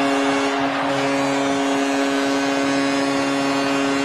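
The Toronto Maple Leafs' arena goal horn sounds one long, steady blast over a cheering crowd, signalling a home-team goal.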